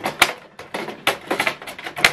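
Several sharp plastic clicks and knocks from an HP Envy 6030 inkjet printer as a spring-loaded part inside is pushed back into place and latches, the loudest about a quarter second in.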